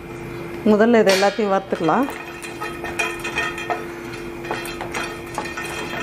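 Whole spices being stirred as they dry-roast in a hot pan: a utensil scrapes and clinks against the pan in scattered, irregular strokes. A voice speaks briefly about a second in, and a steady low hum runs underneath.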